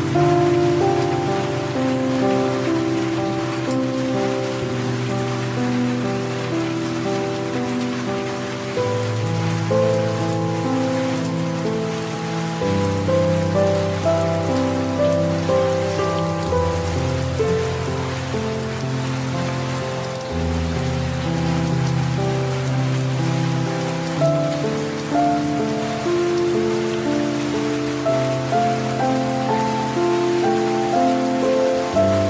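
Steady rain falling, mixed with slow, soft instrumental relaxation music: low notes held for a few seconds each under a gentle melody of shorter notes.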